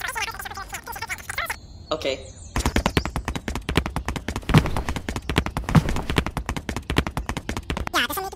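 Cartoon sound effects: squeaky, wordless character chatter for the first couple of seconds, then a long, fast run of sharp clicks that lasts to the end.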